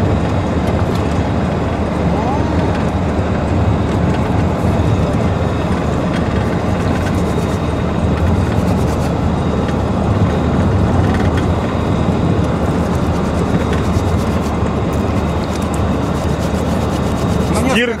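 Steady road and engine noise heard inside the cabin of a moving GAZelle minibus.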